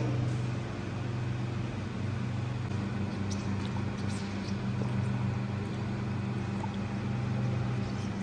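Water swishing in a steel bucket as a gloved hand stirs potassium hydroxide into it, over a steady low hum in the room.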